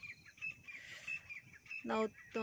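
Small birds chirping in the background, a string of short high chirps repeating through the pause.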